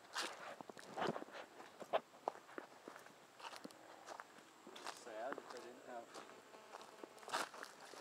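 Footsteps on bare dirt and dry fallen leaves, an irregular series of short scuffs and crackles as someone walks slowly across the ground.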